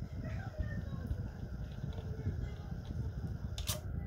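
Nakamichi BX-100 cassette deck transport running in fast forward with no cassette loaded, a steady low motor hum. It keeps running without auto-stopping, its optical reel sensor newly replaced. A sharp click comes near the end.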